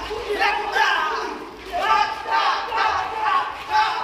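Men shouting fight yells, one short loud cry after another, while trading staged punches and kicks.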